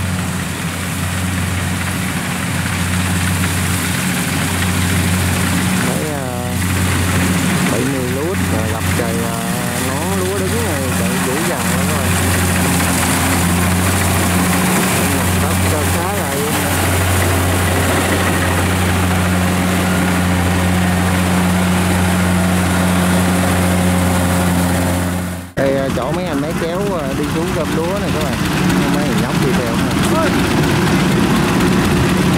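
Kubota combine harvester's diesel engine running steadily under load while cutting rice, a loud, even low hum. Voices are heard partly over it, and the sound breaks off suddenly about 25 seconds in.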